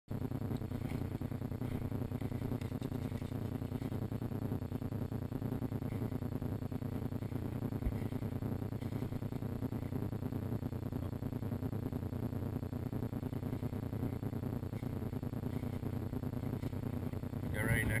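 Steady low rumble of wind and handling noise on a camera carried on a shotgun by a walking hunter. A man's voice begins near the end.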